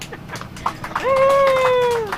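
Cabin reaction right after a sung song: scattered sharp taps and laughter, then about a second in a high voice lets out a held whoop that slides slightly down in pitch.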